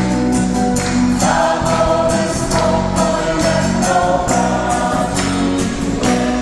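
Congregation singing a worship song together over acoustic guitar, with hands clapping on the beat about twice a second.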